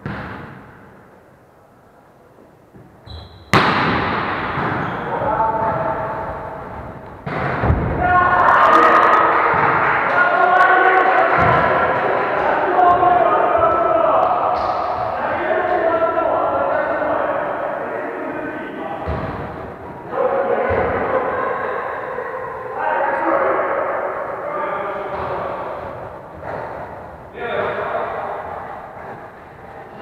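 Volleyball being struck and thudding on a wooden sports-hall floor, the first loud hit about three and a half seconds in and another about seven seconds in, with a few softer knocks later. Players' voices and shouts echo through the hall for most of the rest.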